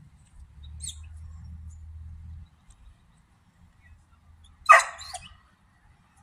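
Vizsla giving one loud, short bark about three-quarters of the way in, followed by a smaller second yelp.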